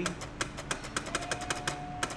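Antique stock ticker tape machine clicking in a quick regular rhythm, about seven clicks a second, as its printing mechanism steps with each pulse from a hand-tapped sending key; the tapping rate sets the machine's speed.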